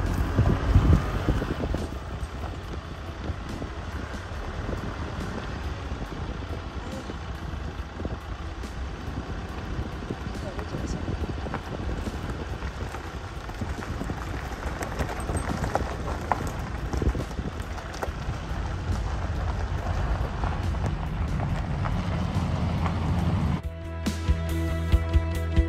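Wind rumbling on the microphone outdoors, with a stronger gust about a second in.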